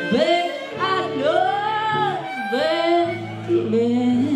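A woman singing the blues over her electric archtop guitar, with the band behind her: three sung phrases with swooping, bending notes.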